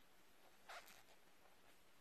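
Near silence, with one brief soft rustle of yarn and crocheted fabric being handled about three-quarters of a second in.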